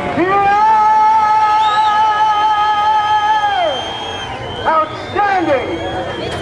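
A man's long drawn-out yell held for about three and a half seconds, sliding down at the end, followed by a couple of shorter whooping calls.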